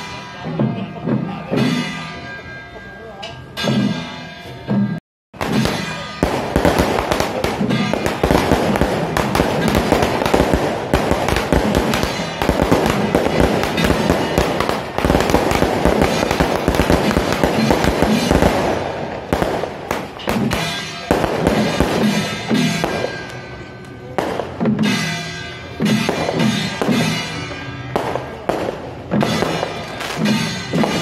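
Firecrackers and a fountain firework going off in a loud, dense, continuous crackle for about fourteen seconds. Before the crackle there is rhythmic drum-led procession music, and the same rhythmic pattern returns after it.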